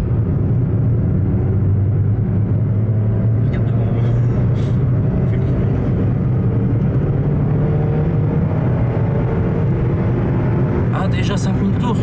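Citroën Saxo's petrol engine heard from inside the cabin, running hard at high revs under acceleration, its note slowly rising as the car gathers speed.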